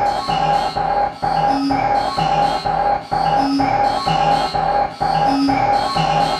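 1991 Belgian hardcore techno track: a held synthesizer tone over a steady, repeating electronic beat.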